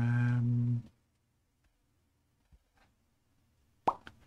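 A man's voice holding a long, flat 'mmm' hum on one pitch for about the first second, then quiet, with a sharp click just before the end.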